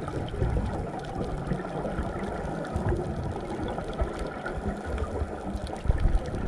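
Underwater reef ambience picked up through a camera housing: a steady low rumbling water noise with faint, scattered crackling clicks.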